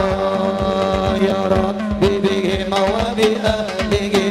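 A man singing a qasidah into a microphone over a sound system, in long, drawn-out melodic phrases, with hand-drum strokes and a steady low tone underneath.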